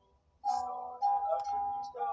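A man singing to his own acoustic guitar. The voice comes in about half a second in and holds a long note toward the end.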